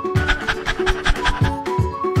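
Dog panting sound effect, quick breaths about eight a second for over a second, over bouncy background music with plucked notes and a steady bass beat.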